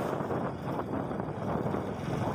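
Steady rush of wind buffeting the microphone, mixed with the running noise of the vehicle carrying the camera as it travels along the road.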